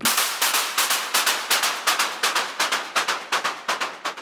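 VPS Avenger synth effects preset playing a loop of rapid, uneven noise hits, hissy and high with almost no bass.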